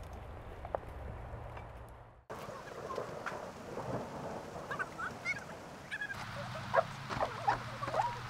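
Outdoor ambience: a faint steady background with a low hum that cuts off abruptly about two seconds in. It is followed by an open-air hiss with short bird calls, a few at a time, in the second half.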